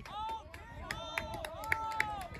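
Distant voices of players and onlookers calling out across an open playing field, including a couple of long drawn-out shouts, with a few scattered sharp clicks.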